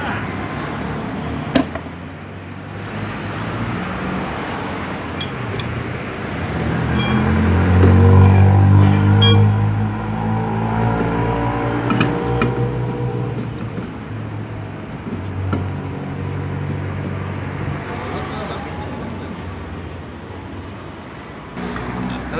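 Motor vehicle engine passing close by, swelling to its loudest about eight seconds in and then fading, over steady road traffic noise. A few short metallic clicks from tools at the wheel hub.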